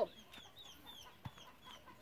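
Chickens peeping faintly: a string of short, high, falling peeps, several a second. There is a soft knock a little past halfway.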